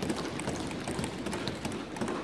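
Many members of parliament thumping their desks, a dense, uneven patter of knocks: the Indian parliamentary way of applauding an announcement.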